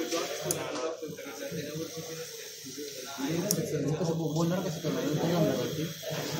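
Indistinct talking by people in the room, with no words clear enough to make out and a softer stretch in the middle.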